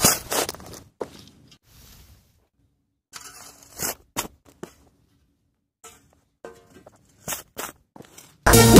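Sparse short clicks and scrapes with near-silent gaps between them, after a sound that fades out over the first second.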